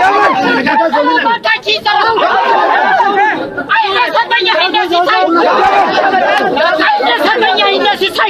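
Several men's voices calling out and talking over each other without a break: a fukera, the Amharic warrior's boast, declaimed amid a crowd.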